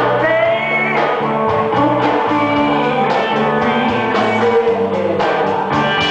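Live rock band playing: electric guitar, bass and drums, with a steady beat.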